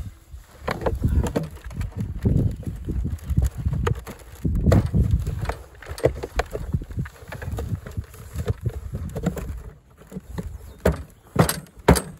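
Irregular rustling, scraping and soft thuds of soil being worked by hand around the base of a frost-free hydrant's standpipe in a narrow hole, with a few sharp clicks near the end.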